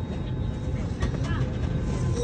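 Steady low drone of an airliner cabin, with a faint child's voice briefly about a second in.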